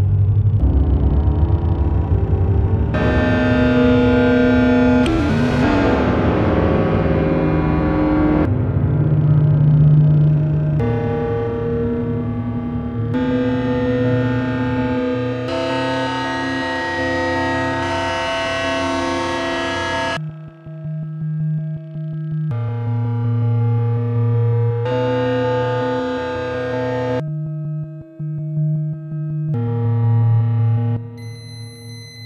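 Electronic computer music. Blocks of sustained, buzzy synthesized chords change abruptly every couple of seconds. A deep rumble sits under the first few seconds, and a gliding sweep comes about five seconds in.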